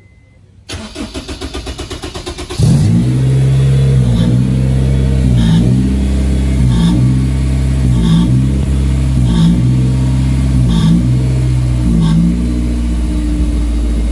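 Honda S2000's four-cylinder engine cranked over by the starter for about two seconds, then catching and running loudly. Its note dips briefly and regularly, about every one and a half seconds.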